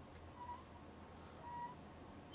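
Quiet room tone with a faint steady low hum, and two faint brief tones, about half a second and a second and a half in.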